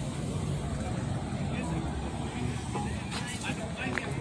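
Indistinct voices of people talking nearby over a steady low rumble, with no single sound standing out.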